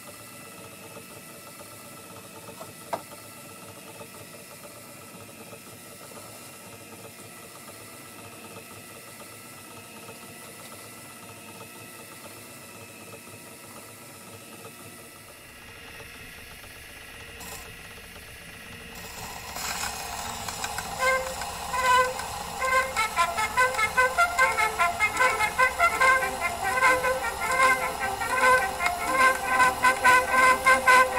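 A motor-driven acoustic gramophone. First the small electric motor and turntable run with a steady, quiet hum. From about nineteen seconds in, a 78 rpm record plays music through the horn, growing louder.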